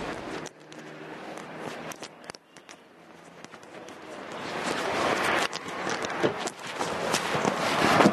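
A steady car-interior hum that cuts off about half a second in. Then scattered footsteps and small knocks, and a rustling of clothes and a bag that grows louder as a man climbs into a car through the open door.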